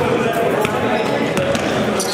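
Basketball being dribbled on a gym floor, a few sharp bounces, over steady indistinct voices in the gym.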